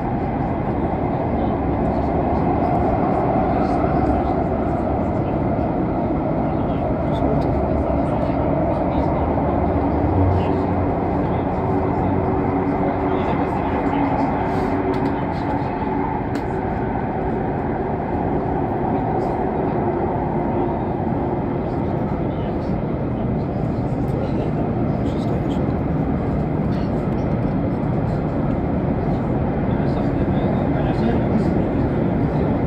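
Elizabeth line train running steadily, heard from inside the carriage: a continuous rumble and rush of wheels and air that keeps up the whole time without a stop.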